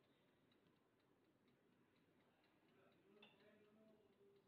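Near silence with faint, evenly spaced ticking. About three seconds in there is a brief faint pitched sound.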